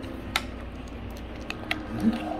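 A few small sharp clicks from handling slime-like putty and its plastic tub, one about a third of a second in and two near the end, over a faint steady hum.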